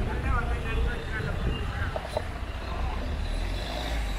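Street ambience: a steady low rumble of passing motor traffic, with a person's voice in the first second or so.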